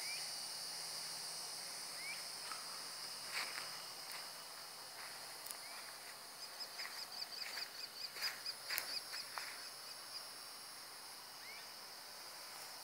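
A steady, high-pitched chorus of insects at dusk, with a short rising bird chirp every few seconds and a rapid trill that starts about halfway through and lasts about four seconds.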